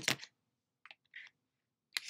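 Small plastic makeup tubes clicking as they are set down and handled on a desk: a sharp click at the start, faint handling noises about a second in, and another click at the end.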